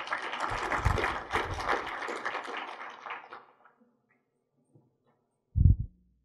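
Audience applauding, dying away after about three seconds. A single low thump near the end.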